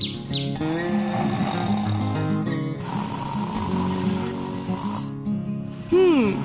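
Cartoon snoring sound effect, two long snores one after the other, over soft background music. A few short high chirps come just at the start.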